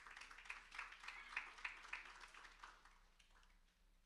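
Faint audience applause that fades out about three seconds in.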